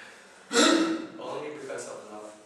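A man laughing: a loud, breathy outburst about half a second in, then softer laughing.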